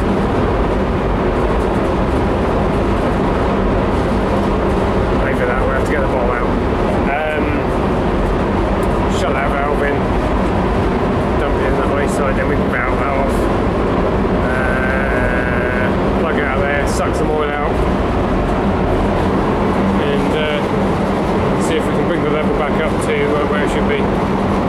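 Loud, steady machinery noise with a constant low hum from refrigeration plant running nearby. Faint voices and other brief sounds come and go over it.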